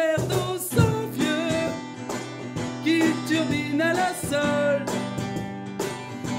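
Acoustic guitar strummed with hand-played cajón percussion under male singing, an upbeat acoustic pop duo.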